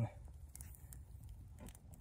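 Faint, scattered snaps and clicks of small twigs being handled and pushed into a small wood-burning camp stove with a small fire burning in it.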